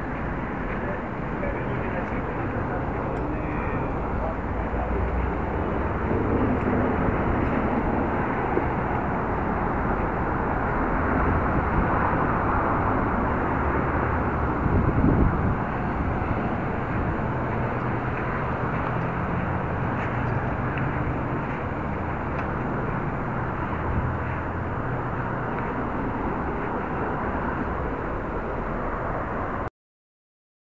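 City street ambience recorded through a tiny spy camera's built-in microphone: steady traffic noise with indistinct voices of passers-by, all sounding muffled and narrow. The noise swells briefly about halfway through.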